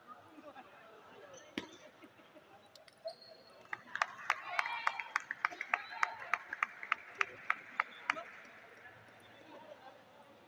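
Table tennis rally: the plastic ball clicking off the bats and the table in a fast, even run of about three to four strikes a second, starting about four seconds in and lasting some four seconds. A single click comes earlier, and spectators talk throughout.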